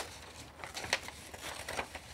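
Sublimation transfer paper being peeled off a hot hardboard panel: a few faint papery crinkles and crackles.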